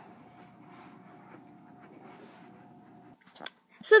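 Faint room noise with a thin, steady hum, cut off abruptly about three seconds in. A few short clicks follow.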